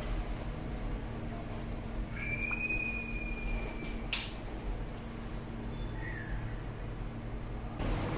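Quiet room background with a steady low hum. A faint, thin high tone lasts about two seconds, and a single sharp click comes about four seconds in.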